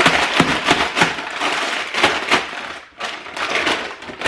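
Plastic bag of frozen mango crinkling as it is handled and pulled open, a continuous crackle with a short pause about three seconds in.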